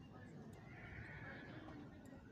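A racehorse whinnying faintly: one call of about a second near the middle.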